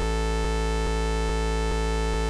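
A sustained synthesizer waveform, a sawtooth-like tone, looping in the Kontakt sampler. A faint click comes a little over twice a second, at the loop point, because the loop start and end do not meet cleanly at a zero crossing.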